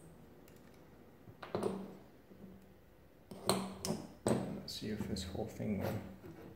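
Brass and steel parts of an antique arithmometer clinking and scraping as its top plate is worked loose from the mechanism: one clatter about a second and a half in, then a run of sharper knocks and scrapes from about halfway on.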